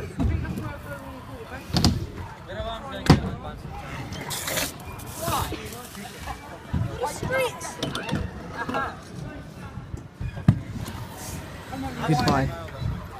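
Stunt scooter landing and riding on a skatepark ramp: sharp clacks of the deck and wheels about two and three seconds in, the second the loudest, with a low rolling rumble and another clack near the end, under faint voices.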